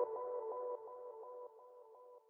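Fading tail of an electronic logo jingle: a few steady synthesized tones echoing in even pulses about six times a second, dying away to near silence.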